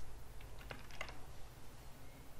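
Computer keyboard typing: a quick run of about half a dozen keystrokes about half a second to a second in, over a steady low hum.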